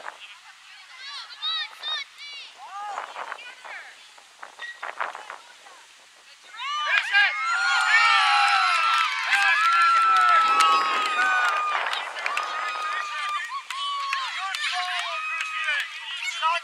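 Players and spectators cheering and shouting a goal: scattered calls at first, then about six and a half seconds in a sudden burst of many overlapping high-pitched voices that lasts several seconds and slowly dies down.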